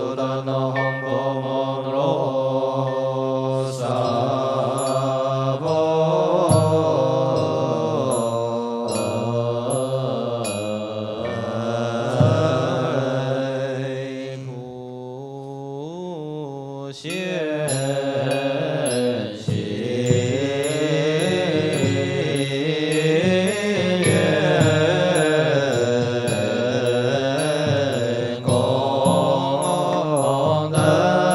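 Monastic assembly singing Chinese Buddhist liturgy (fanbei) in slow, drawn-out melodic lines that glide and hold rather than breaking into syllables, easing off briefly about halfway through before going on. A light high percussive tick keeps a steady beat underneath.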